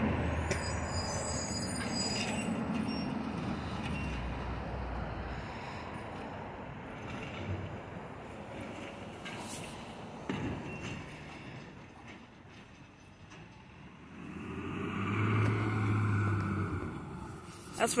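Garbage truck approaching down a residential street: steady engine and road noise that slowly fades, with one brief sharp hiss about halfway through. Near the end the engine swells louder for a couple of seconds with a low hum, a sound a truck fan calls his favorite.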